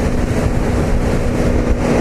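Wind rushing over a motorcycle helmet at speed with its visor cracked open, buffeting the visor, over the steady drone of the motorcycle's engine and road noise.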